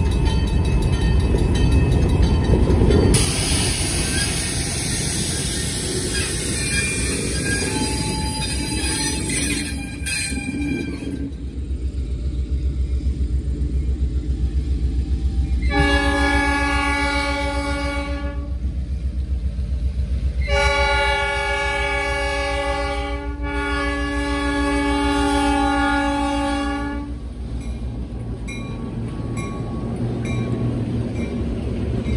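Diesel switcher locomotive rumbling past at low speed; after a cut, a diesel locomotive horn sounds twice, a short blast and then a long one, over the steady low rumble of a diesel engine hauling a train of cabooses.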